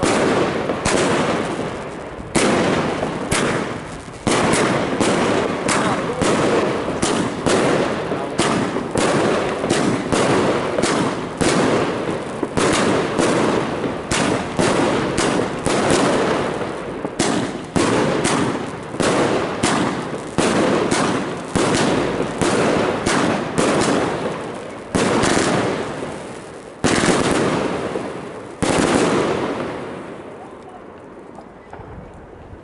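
Three Rainbow Twinkler fireworks cakes with 30 mm tubes firing together: a rapid, irregular run of shots and bursts, roughly one every half second, each trailing off in a crackle. The shots thin out near the end, the last coming just before the finish.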